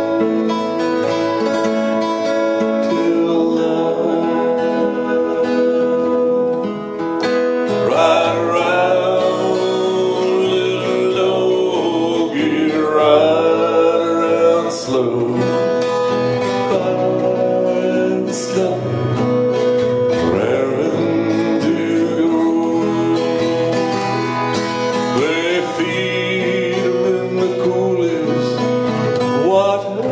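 Acoustic guitar accompanying a man singing a slow cowboy folk song into a close microphone; the guitar plays alone at first and the voice comes in about eight seconds in, holding long notes.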